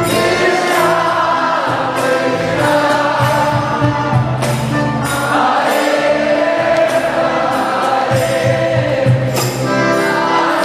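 Devotional kirtan: a group of voices singing a chant together over sustained low notes, with sharp percussion strikes keeping the rhythm.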